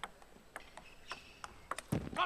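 Table tennis rally: the plastic ball clicks sharply off the rackets and the table roughly every half second, with a quick pair of clicks near the end. A heavier low thud comes right at the end.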